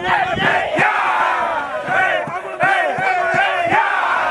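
A crowd of young men, a football team, shouting and chanting together in a rowdy hype-up, with a run of quick rhythmic group shouts in the second half.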